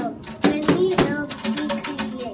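A small handmade paper shaker rattled in a series of quick, sharp shakes, with a child's voice singing or chanting along.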